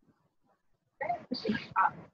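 About a second of near silence, then a person's voice in three short, loud bursts.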